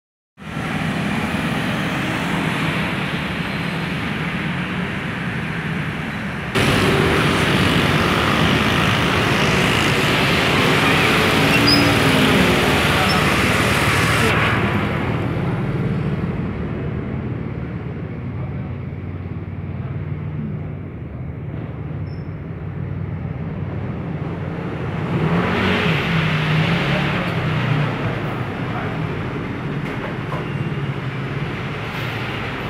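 Street traffic with scooters and cars passing, loud in the first half, quieter from about 15 s in, then swelling again briefly around 25 s.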